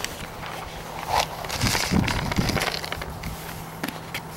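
Footsteps crunching on gravel, a few irregular steps.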